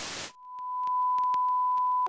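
A burst of static hiss cuts off a moment in. A single steady pure test tone then swells up and holds, with faint scattered clicks like old film crackle.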